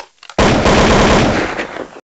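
A string of firecrackers going off: a sudden, very loud, continuous run of rapid bangs that starts about half a second in and eases slightly near the end.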